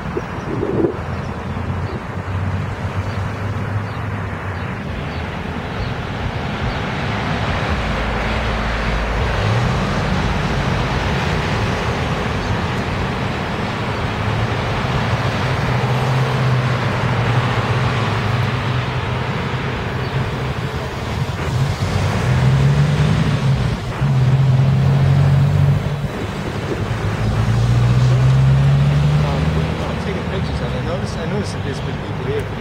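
City street traffic: a steady roar with a vehicle engine running low and rising in pitch several times, loudest in the last third.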